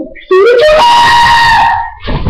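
A loud, high-pitched held yell. The voice rises, then holds one steady note for about a second before breaking off near the end.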